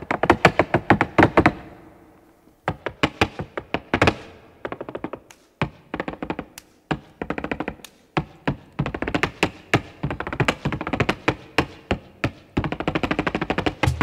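Flamenco zapateado: a dancer's shoes striking the stage floor with heel and toe in rapid, rhythmic flurries, unaccompanied, with a short pause about two seconds in.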